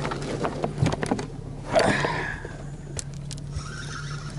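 A boat engine idling with a steady low hum, under scattered clicks and knocks of handling aboard the boat and one louder knock and rustle about two seconds in.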